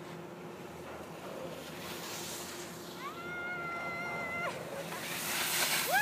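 A high-pitched voice call, a single held note that rises at the start and lasts about a second and a half, about halfway through. Over the last second, a swelling hiss of skis sliding on snow as a skier passes close.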